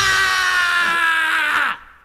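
A hardcore punk band's final held note rings out after the drums stop, sliding slightly down in pitch, then cuts off sharply near the end.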